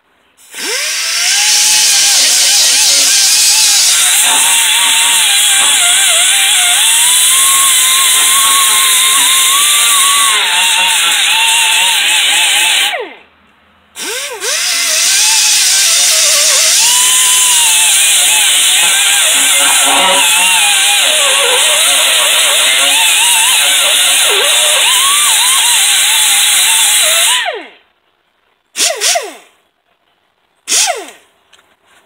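Pneumatic die grinder with a small abrasive disc grinding heavy rust off the steel deck of a brush hog. It makes a loud, airy whine whose pitch wavers as the disc works the metal. It runs for about twelve seconds, stops for a second, runs about thirteen seconds more, and then gives two short blips near the end.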